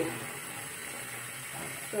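A faint steady hiss in a pause between a woman's words, with her speech at the very start and again near the end.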